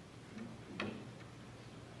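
Quiet room tone in a pause between speech, with a low steady hum and one faint click just under a second in.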